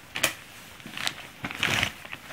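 Clothes and a plastic sack rustling as they are handled: a short crinkle, another about a second in, and a longer crinkle near the end.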